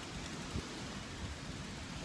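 Steady rushing wind noise on the phone's microphone, with a low rumble underneath and one small click about half a second in.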